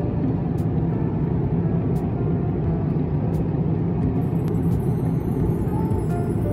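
Steady cabin noise of a jet airliner in flight: the low, even rush of engines and airflow, heard by a window seat. A few faint clicks sound over it.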